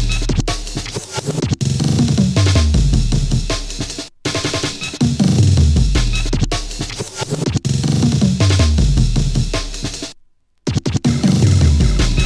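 Jungle/breakbeat hardcore track: fast chopped breakbeat drums over deep bass notes that step downward in pitch, again and again. The whole mix cuts out for an instant about four seconds in, and again for about half a second near the ten-second mark.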